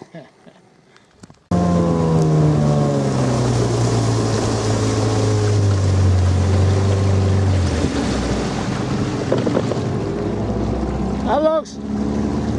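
Outboard motor running, cutting in about a second and a half in; its pitch falls steadily for about six seconds, then it runs on at a lower pitch. A voice comes in just before the end.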